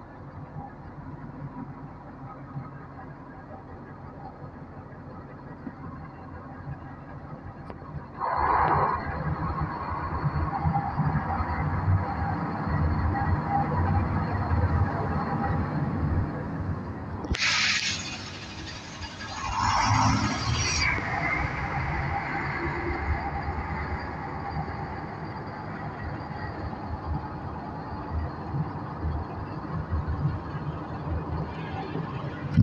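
NefAZ 5299 city bus running, its noise growing sharply louder about eight seconds in and staying so. Around the middle come two loud bursts of hiss a couple of seconds apart.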